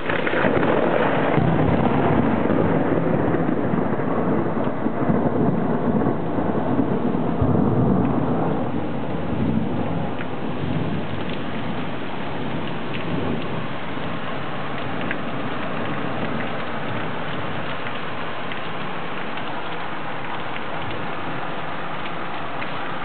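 A thunderclap breaks right at the start and rolls on as a rumble for about eight seconds, over steady rain that carries on alone for the rest of the time.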